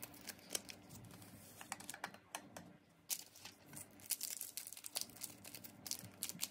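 Foil-laminated Nescafé 2-in-1 instant coffee sachets torn open and crinkled between the fingers: a run of sharp, papery crackles with a quieter pause about two seconds in.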